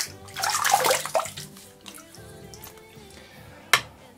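Water splashing and running for about a second near the start, as more water is worked into the shaving lather. A single sharp click near the end.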